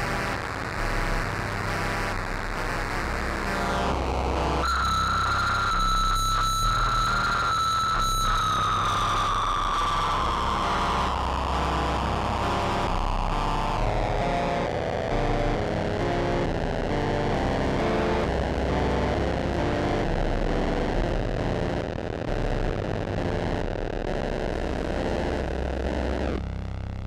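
Electronic music played on synthesizers and keyboards, a dense continuous texture. About five seconds in, a held high synth tone enters and after a few seconds slowly glides down in pitch.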